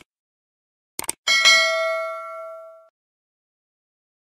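Two quick mouse-style clicks, then a bright notification bell ding that rings with several pitches and fades out over about a second and a half: a subscribe-button and bell sound effect.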